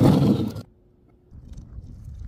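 A loud splashing crash of a dropped object hitting paving tiles, lasting about half a second, then a faint low rumble.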